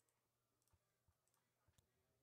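Near silence: a dead gap in the broadcast audio.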